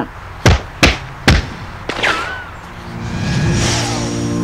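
Three sharp thuds in quick succession, then a rising swell of sound in the last second that builds into background music.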